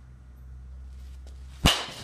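A baseball bat striking a ball once near the end, a sharp crack with a brief ring, over a low steady hum.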